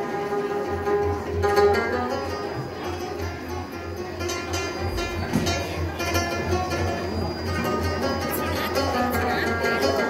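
Rubab plucking a lively melody over a steady rhythm on a goblet hand drum (tombak), with no singing.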